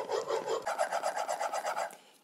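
Steel plane iron, clamped in a honing guide, scraped back and forth in quick short strokes on a wet 8000-grit ceramic waterstone, honing a 30-degree micro bevel. The strokes stop just before the end.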